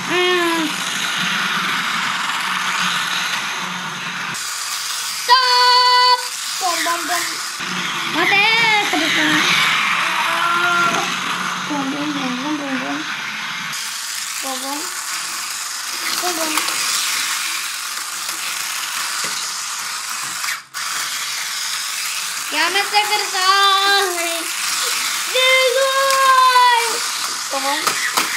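Battery-powered toy bullet train whirring and clattering along a plastic roller-coaster track. A child's drawn-out wordless "ooh"/"whoa" sounds come and go over it.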